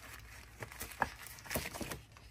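Stiff cardstock packaging folder being handled and opened by hand: soft paper rustling with a few light ticks and taps, the clearest about a second in.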